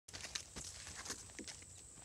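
Footsteps on soil between rows of cowpea plants: a few irregular steps as someone walks up.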